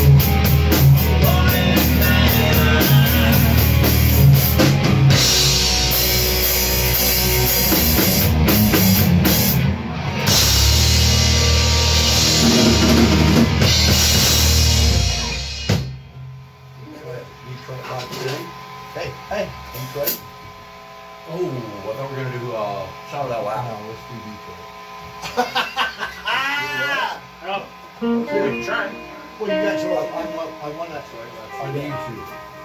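Live rock band playing loud, with a drum kit and electric guitars; the song stops abruptly about halfway through. After that come quieter scattered sounds: voices and stray guitar notes.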